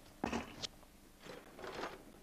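Brief handling noises at a kitchen counter: a short rustle ending in a sharp click under a second in, then a softer scraping rustle near the end.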